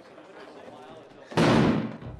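A single shotgun blast from a film soundtrack, sudden and very loud, about one and a half seconds in, with a low rumbling tail. It is the off-screen shot that kills a child.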